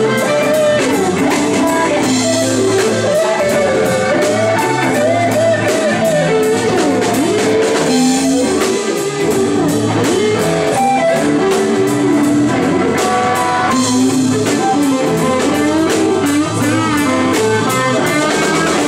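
Live blues band playing: an electric guitar carries a lead line of bent and sliding notes over drums with steady cymbal strokes, bass and keyboard.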